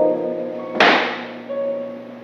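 Instrumental intro of a hymn accompaniment, slow sustained keyboard chords changing twice. A single sudden hit about a second in fades out over half a second.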